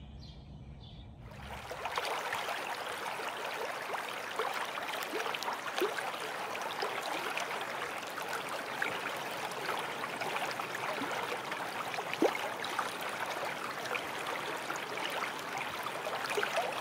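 Faint outdoor birdsong, then, from about two seconds in, steady running water dense with small drips and splashes.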